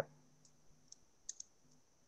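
Near silence with a few faint, short clicks scattered through it and a faint steady high-pitched tone underneath.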